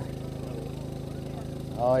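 Small gas generator on an electrofishing boat running steadily, a low even hum that powers the shocking anodes. A man's voice says "Oh" near the end.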